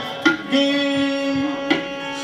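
Live Hindustani classical music: a tabla stroke about a quarter second in and another near the end, framing a long steady held note over the harmonium.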